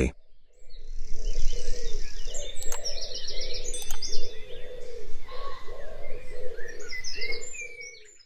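Birds chirping in many short calls over a steady background, with two sharp clicks around the middle, the second followed by a brief ringing tone.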